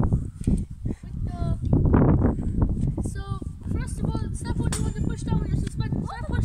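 Young voices talking and calling out indistinctly, over a steady low rumble.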